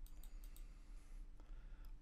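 Faint computer mouse clicks, a few single clicks as a number field's arrow button is clicked, over a low steady hum.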